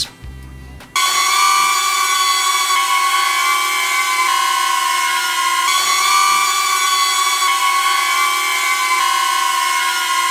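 DJI Neo mini drone hovering: its small propellers give a steady high-pitched whine made of several tones, starting about a second in. The pitch steps slightly a few times as one propeller-guard configuration gives way to the next. The pitch is lower with the propeller guards removed, a sign that the propellers spin slower and draw less power.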